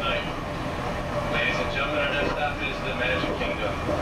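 Monorail car running along its beamway, heard from inside the cabin as a steady rumble and hiss. Indistinct voices come in over it from about a second in.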